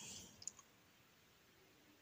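Near silence: a short pause in speech with faint room tone, and one faint click about half a second in.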